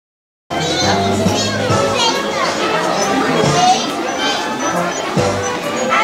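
Children's voices and chatter from a crowd over music playing, after the sound is cut out entirely for about the first half second.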